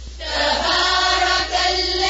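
Several voices chanting Quranic recitation together, melodic and drawn out, with a new phrase starting just after the beginning.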